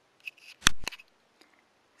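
A brief faint rustle, then two sharp clicks about a fifth of a second apart, a little under a second in.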